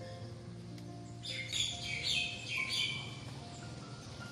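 A bird chirps in a quick run of high calls from about a second in until about three seconds, over soft background music.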